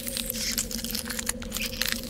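Intro sound effect of crackling and crunching, thick with sharp clicks, over a steady low drone.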